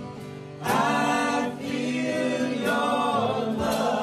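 A small group of singers singing a gospel-style worship song together into microphones, with instrumental backing; the voices come in loud just under a second in after a quieter start.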